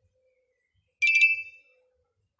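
A bright metallic chime: a few quick strikes about a second in, ringing with two close high tones and fading out within about a second.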